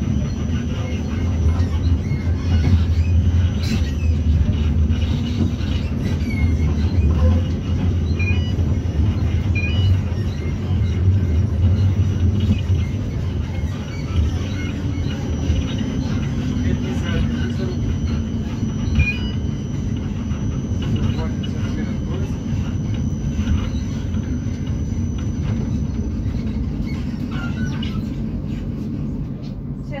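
Tram running along street track, heard from inside the car: a steady low rumble, heavier for the first half and easing after about halfway, with a faint high steady whine above it.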